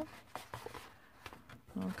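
Faint rustling and a few light crinkles of a sheet of scored, folded designer paper being handled and opened out by hand.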